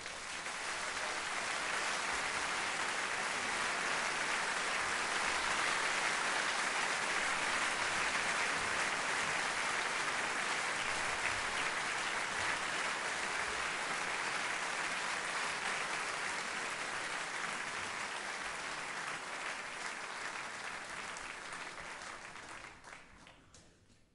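Concert audience applauding, a dense, even clapping that swells in the first couple of seconds, holds, and fades out near the end.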